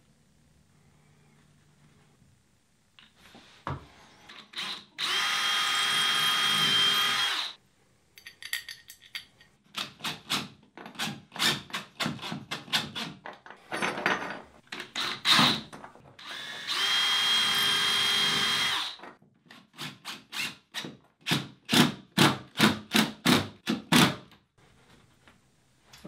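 Electric drill running in two steady bursts of about two and a half seconds each, boring holes into the wall to mount a shower rod bracket. Between and after the bursts comes a run of short, sharp knocks, a few a second.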